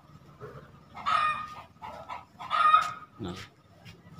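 Chickens calling twice, each call about half a second long, about a second and a half apart.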